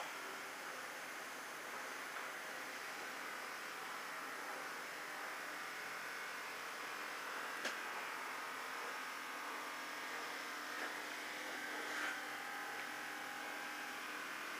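Faint, steady background noise of nearby construction work, where a lift is being built. A low hum joins in about nine seconds in, and there are a couple of brief clicks.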